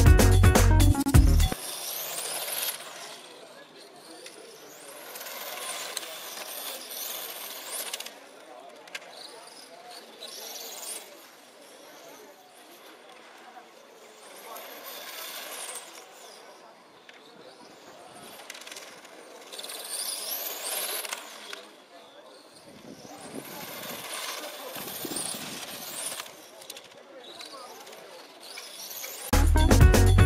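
1/8-scale nitro RC racing cars' small glow engines screaming at high revs around a circuit, their high-pitched whine rising and falling over and over as cars accelerate, brake and pass. A music track cuts off about a second and a half in and returns near the end.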